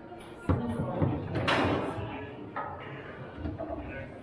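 Foosball table in play: sharp knocks of the ball and the plastic men against the rods and the table, with a louder, longer clatter about a second and a half in. Voices murmur in the room.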